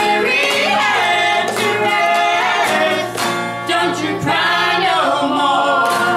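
Several women's voices singing together in harmony, unaccompanied except for hand claps that mark the beat.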